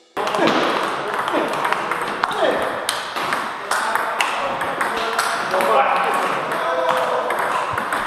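Table tennis balls clicking off bats and the tabletop in ongoing rallies at several tables, many quick clicks at uneven intervals, with voices chattering in the background.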